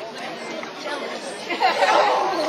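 Crowd chatter: many people talking at once, no single voice clear, with a nearer voice getting louder near the end.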